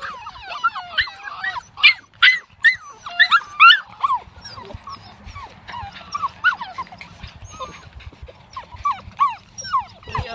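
A litter of puppies whining and yelping together: many short, high-pitched cries overlapping one another. The cries are loudest and most crowded in the first four seconds, then carry on more sparsely.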